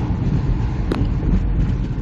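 Ford Windstar minivan with a 3.8 L V6 being driven slowly along a street, heard from inside the cabin: steady low engine and road noise, with one short click about a second in.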